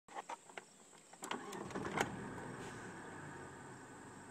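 Car engine being started: a few clicks, then the starter cranking from about a second in, the engine catching at about two seconds and settling into a steady idle.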